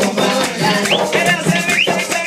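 Live Puerto Rican bomba music: barrel drums (barriles) playing a driving rhythm with a maraca shaking over them, with short rising voice calls twice in the middle.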